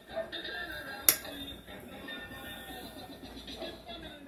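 Background television sound, voices and music, playing at moderate level in a room, with one sharp click about a second in.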